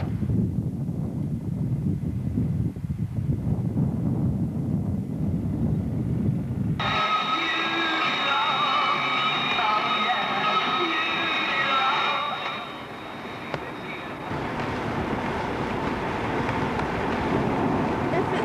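A low rumble, then after a cut about seven seconds in, the sound of a car driving: a steady high whine over mixed mid-range noise, and from about fourteen seconds a steady hiss of tyres on a wet road.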